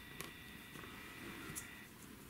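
Faint room tone with a light tap about a quarter second in and soft dabbing of a paintbrush putting black paint on paper. A faint steady high whine stops near the end.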